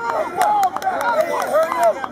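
Several voices shouting and talking over each other, some of them high-pitched, with a few sharp clicks among them.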